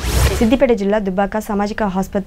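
A short whoosh from the channel's logo sting at the start, then a woman news presenter speaking in Telugu.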